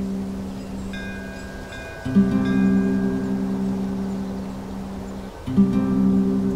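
Slow ambient film-score music: a low held note that sounds again about every three and a half seconds, fading between entries. Faint high chime tones ring over it from about a second in.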